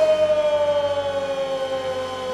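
A man's voice belting one long, high sung note that falls slowly in pitch, with a slight waver.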